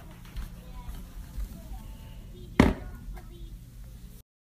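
One sharp knock of a spoon against a ceramic bowl of cereal set in frozen milk, about two and a half seconds in. Faint voices and a low steady hum run underneath.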